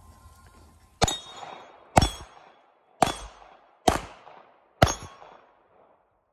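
Five handgun shots, about one a second, each trailing off in a short echo.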